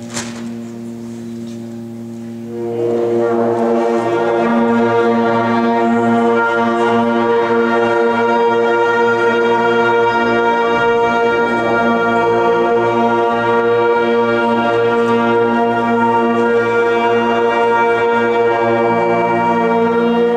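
A concert band tuning: a few low brass instruments hold a steady concert B-flat, then about three seconds in the rest of the band joins on the same note in octaves and holds it loud and unchanging. A single short click sounds right at the start.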